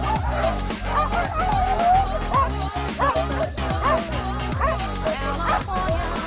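Electronic dance music with a steady beat, over a pack of excited sled dogs barking and yelping in many short rising and falling cries.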